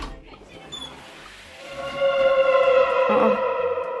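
A single held musical note at one steady pitch, rising in level about halfway in and sustained for about two seconds.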